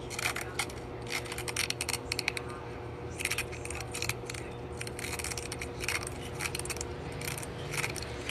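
Scissors snipping and working through a paper cup: irregular runs of crisp clicks and crackles, along with the handling of the cup.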